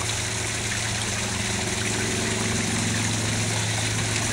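Steady rush of running water with a constant low hum beneath it.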